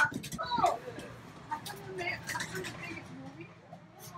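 Quiet talking: a short voiced utterance in the first second, then low, indistinct voices that fade towards the end.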